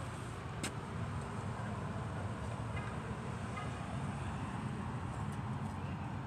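Steady hum of road traffic, with one sharp click a little over half a second in.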